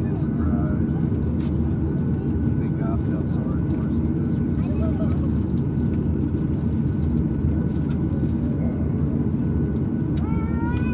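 Steady low drone of a Boeing 737's idling jet engines and cabin air, heard from inside the passenger cabin while the plane waits on the taxiway. Faint passenger voices come and go over it.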